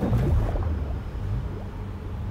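A deep rumble from the opening of a film trailer's soundtrack, coming in suddenly and slowly dying away.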